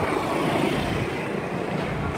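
Street traffic noise: a steady rumble of passing vehicle engines.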